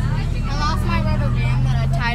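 School bus engine running steadily, heard from inside the cabin as a constant low drone, with other passengers' voices chattering in the background.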